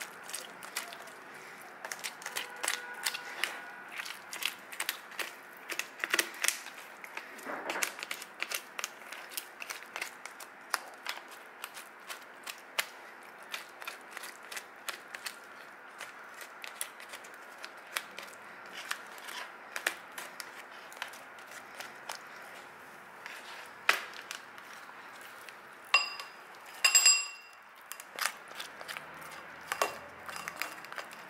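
Metal spoon scraping and digging meat out of a cooked giant isopod's shell, giving many small clicks and scrapes. Near the end come a few ringing clinks of the spoon on a hard surface.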